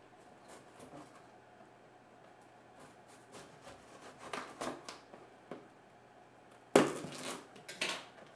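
A blade slitting the packing tape along a cardboard box seam, with faint scraping and small clicks. Near the end come two loud, sharp cardboard-and-tape sounds, the second the louder, as the box is pulled open.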